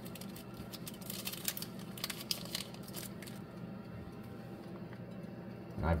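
Faint small clicks and crinkles as pieces of chocolate bar are handled, broken and set on a graham cracker, mostly in the first half. Under them runs the steady low hum of a countertop toaster-oven air fryer.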